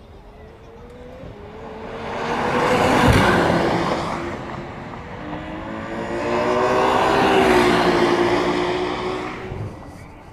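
McLaren Senna's twin-turbo V8 running flat out as it passes on the circuit, the engine note loud and swelling to a peak about three seconds in. It eases off, then builds again to a second long peak around seven to eight seconds in before fading near the end.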